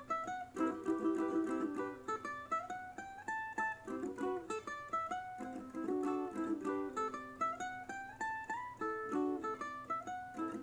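Ukulele played solo: chords with two climbing runs of single notes, one about a second in and another past the middle.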